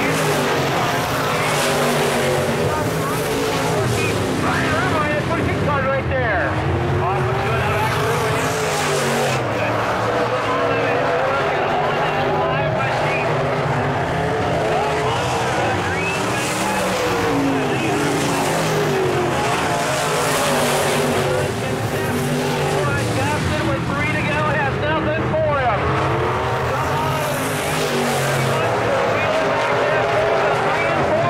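A field of dirt-track modified race cars racing on a dirt oval, their engines running hard. The engine pitch repeatedly sweeps up and then back down as the pack laps the track.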